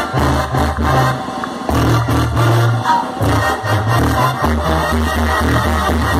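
Live Mexican banda sinaloense brass band playing: trumpets over a tuba bass line that steps from note to note, with no singing. Recorded from the audience.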